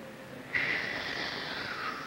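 Dental air syringe blowing a short jet of compressed air onto a child's teeth, a steady hiss that starts about half a second in and lasts a second and a half, sinking a little in pitch as it goes. It is drying the teeth before topical fluoride is painted on.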